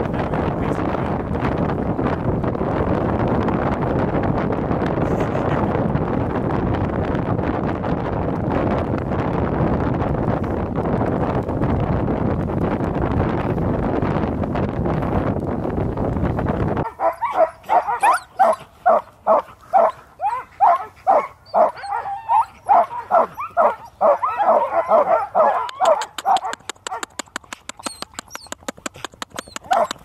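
Steady rushing noise of the moving dog sled with wind on the microphone, cutting off suddenly about halfway through. Then harnessed sled dogs bark and yip over and over, several barks a second, most densely near the end.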